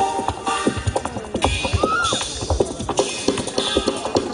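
Jazz drum kit played live: quick stick strikes on drums and rims with cymbal splashes, a busy break with little sustained piano or bass, and a short bent tone about halfway through.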